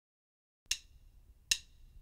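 Two sharp wooden clicks about three quarters of a second apart: drumsticks struck together in a count-in before the band starts the song.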